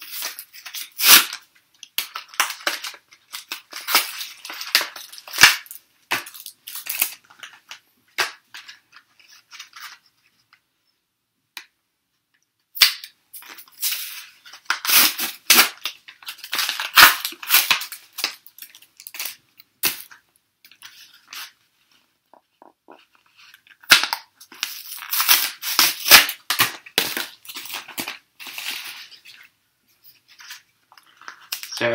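Foil Yu-Gi-Oh booster pack wrappers crinkling and tearing as packs are opened by hand. The crackling comes in three spells separated by short pauses.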